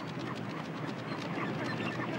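A rockhopper penguin colony calling, a steady din of many overlapping short calls, over waves washing on rocks.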